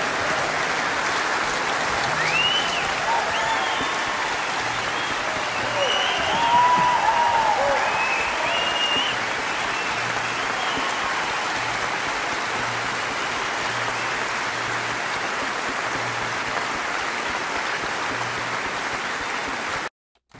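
Large concert audience applauding steadily, with voices rising over the clapping; it cuts off suddenly near the end.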